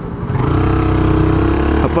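A 150 cc motorcycle engine pulling away under throttle: its note grows louder about half a second in and holds steady until just before the end.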